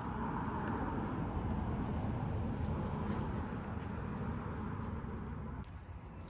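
Steady low rumble of outdoor background noise, even in level, that drops away abruptly near the end.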